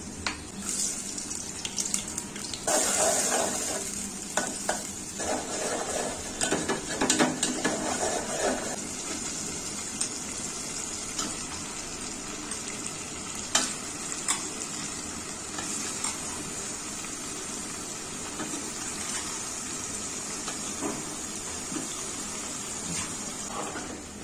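Food frying in hot oil in an aluminium pot, sizzling steadily, while a metal spoon stirs and scrapes against the pot. The stirring is busiest from about three to nine seconds in, with scattered clinks after that.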